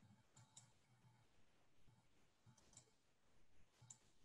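Near silence with a few faint, scattered clicks: a pair about half a second in, another pair between two and a half and three seconds in, and one just before the end.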